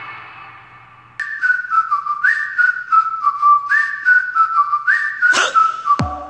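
Music fading out, then about a second in a whistled melody begins: a short tune of stepping notes with three quick upward slides, over a light, regular beat.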